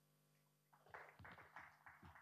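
Faint audience applause, starting about two-thirds of a second in as a run of uneven claps.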